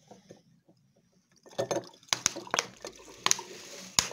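Vinegar pouring from an upturned plastic bottle into a drinking glass, starting about a second and a half in, splashing with irregular glugs and clicks.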